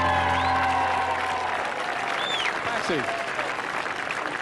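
Large audience applauding, while the band's final held chord dies away in the first second and a half.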